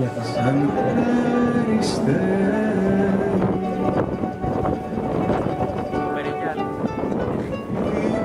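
Live concert music: a small ensemble playing a slow melody of long held notes, several pitches sounding together.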